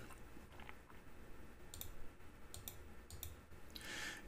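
A handful of faint clicks from a computer mouse, most of them in the second half.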